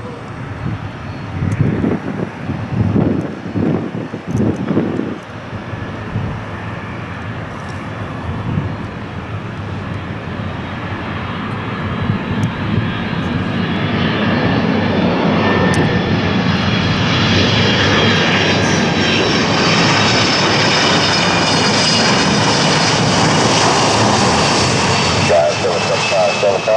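Boeing 767-300ER on final approach, its twin jet engines growing steadily louder as it comes in low and close, then holding a loud rumble with a high engine whine above it. A few low gusty rumbles come through in the first few seconds.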